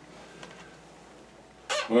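Faint rustling and a small knock as a man sits down in an office chair, then near the end a man's voice starts loudly with a drawn-out "Well".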